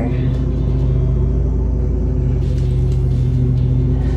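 Lawn mower engine running outside with a steady low drone.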